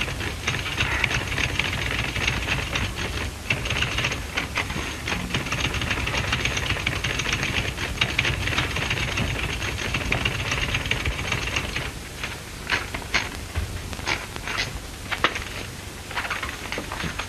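Manual typewriter being typed on in a quick, dense run of keystrokes; about twelve seconds in it slows to separate key strikes. A steady low hum runs underneath.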